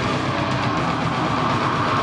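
Live heavy metal band playing loud, dense distorted electric guitars without a break.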